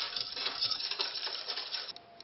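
A utensil stirring yeast and sugar into warm milk in a saucepan, making rapid light clinks and scrapes against the pan.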